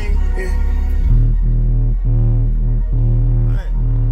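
Loud bass-heavy electronic music playing through a truck's aftermarket car audio system of two DB Drive WDX G5 10-inch subwoofers, heard inside the cab. The vocals drop out about a second in, leaving deep bass notes in a steady pulse, just under one a second.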